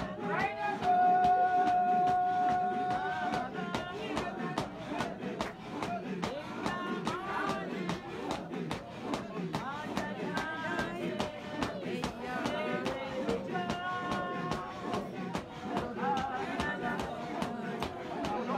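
A congregation singing together, with a long held note about a second in, over a quick, steady beat of sharp strikes.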